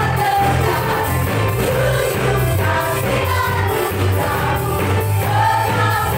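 Live worship band: several singers sing an Indonesian praise song together over keyboard, electric guitars, bass and a drum kit keeping a steady beat.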